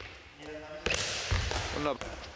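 A handball thudding hard in a sports hall with a reverberant echo, about a second and a half in, amid a noisy stretch of hall sound.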